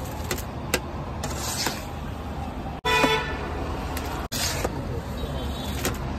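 Roadside traffic noise with a vehicle horn honking briefly about three seconds in. A few sharp clinks of steel plates scooping rice on the iron griddle come near the start, and the sound drops out abruptly twice.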